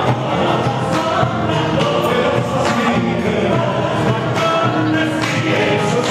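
Live Argentine folk music: several voices singing together in chorus over the band, with drum strokes from a bombo legüero.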